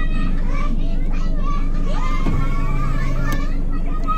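A group of children's voices calling out together over the steady low hum of a vehicle's engine. About two seconds in the engine note picks up as the vehicle moves off.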